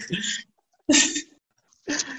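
A person's short, sharp burst of vocal sound about a second in, like a sneeze or forceful exhale.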